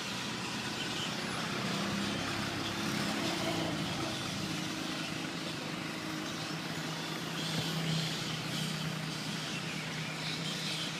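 Road traffic: vehicle engines running with a steady low hum over a continuous wash of noise.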